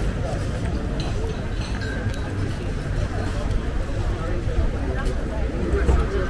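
People's voices talking faintly over a steady low outdoor rumble.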